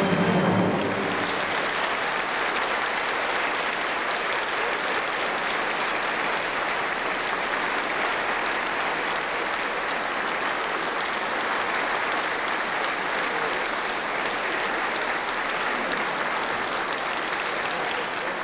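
Concert hall audience applauding steadily, just as the final note of the singer and orchestra dies away in the first second.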